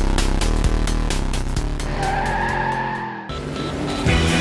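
Background music with a steady beat. About two seconds in, a tire-squeal sound effect comes in: a high screech whose pitch arches up and back down, cut off abruptly about a second later.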